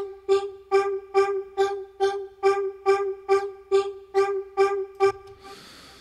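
Vocal-like synth patch playing the same short G note over and over, about two and a half notes a second, while its formant is shifted: the pitch holds and only the upper, vowel-like tones move. The notes stop about five seconds in, leaving a faint hiss.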